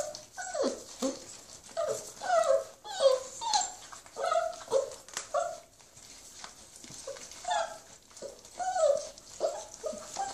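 A litter of five-week-old hound puppies whining and yipping as they crowd over a bone, with short high cries about once or twice a second and a quieter stretch around six to seven seconds in.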